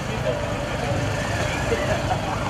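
Steady low rumble of vehicle engines, with faint voices talking over it.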